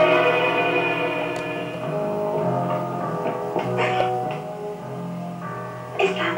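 Music: sustained chords over a low bass line that changes notes about two seconds in.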